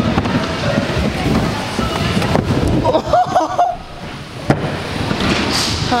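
Scooter wheels rolling and rattling over plywood skatepark ramps, with one sharp knock about four and a half seconds in.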